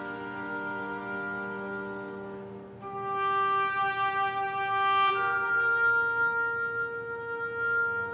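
Chamber ensemble playing slow, held notes: a woodwind sustains a long tone over strings that fades away, then about three seconds in the bowed strings enter louder with a new chord. About five seconds in, one of the notes steps up in pitch and the chord is held on.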